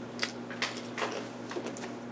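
A few scattered light clicks, irregularly spaced, over a steady low electrical hum.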